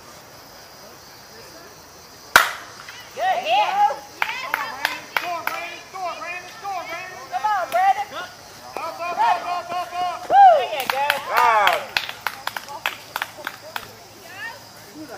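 A slowpitch softball bat hits the ball with a single sharp crack about two seconds in. Several men then shout and yell repeatedly for most of the remaining seconds as the play runs.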